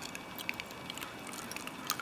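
Faint, sparse small clicks of a lock pick and tension wrench working inside a padlock's keyway, over low room hiss.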